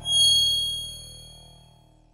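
A single bright metallic ding, struck once and ringing out with a cluster of high bell-like tones that fade away over about two seconds: the sound effect marking the logo reveal at the end of an animated intro.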